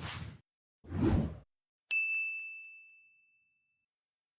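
Intro-animation sound effects: two short whooshes, each with a deep low end, about a second apart. Then a single bright bell-like ding rings out and fades over about a second and a half.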